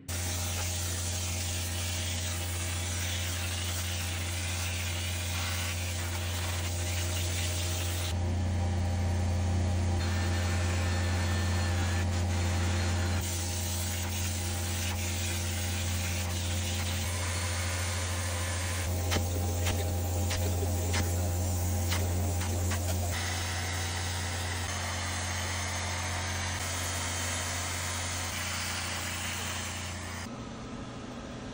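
Upholstery extractor running: a steady low motor hum with a hiss of spray and suction as the wand is worked over a cloth car seat. The sound shifts in tone several times as the wand moves over the fabric.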